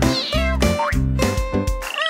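Cartoon kitten meowing once at the start, its pitch falling, over bouncy children's-song instrumental music with a steady beat. A rising sliding sound effect comes near the end.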